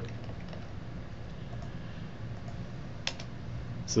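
Faint computer keyboard key presses over a steady low hum, with one sharper click about three seconds in.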